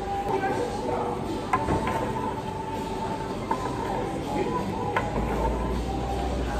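Murmur of background voices over a steady hum, with a few short light knocks of a plastic candy tub being handled on a wooden table.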